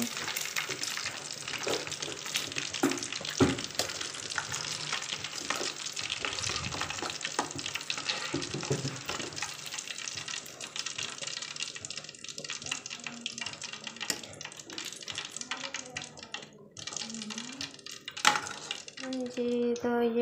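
Hot oil sizzling and crackling in a karahi as fried pakoras are lifted out with a metal skimmer, the gas just turned off. The sizzle thins out in the second half, and there is a sharp knock near the end.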